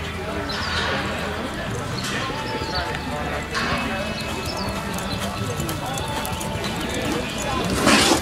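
A horse's hoofbeats as it lopes on the dirt arena, under background talking, with a short loud noise near the end.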